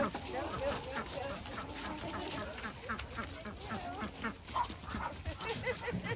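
A dog vocalizing with faint, wavering high whines scattered through the moment.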